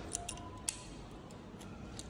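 A few small sharp clicks as a token is pushed into the coin lock on a supermarket trolley handle, the loudest about 0.7 s in, over soft background music.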